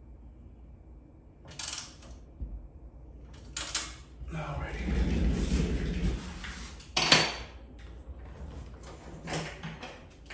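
Workshop handling noises: a handful of separate metal clanks and knocks, as of tools and parts being picked up and set down, with a longer rumbling shuffle in the middle and the loudest sharp clack about seven seconds in.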